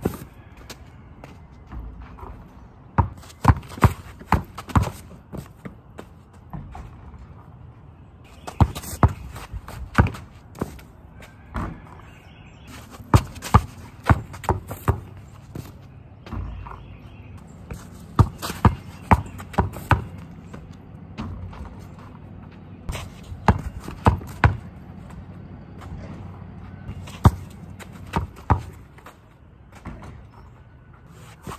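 A basketball dribbled on hard-packed dirt in runs of quick bounces, with short pauses between the runs.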